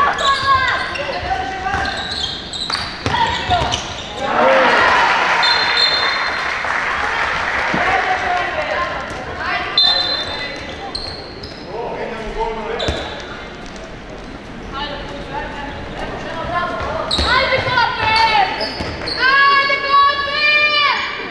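Indoor handball game: players and spectators shouting in a reverberant sports hall, with the handball bouncing and knocking on the wooden floor. Many voices rise together about four seconds in, and there is another burst of shouting near the end.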